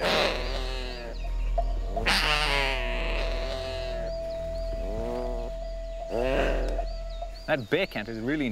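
Binturong (bearcat) growling in long, drawn-out, rising-and-falling calls, loudest twice, about two seconds in and again near the end. It is a defensive warning to keep away or be bitten.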